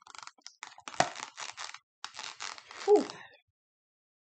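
Plastic wax-brick packaging being handled, crinkling and rustling, with a sharp snap about a second in. A short exhaled "whew" comes near the end.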